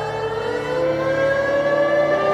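Several sustained synthesizer tones sliding slowly in pitch, rising and falling like a siren, over a steady low drone, as a sweep in a TV intro music track.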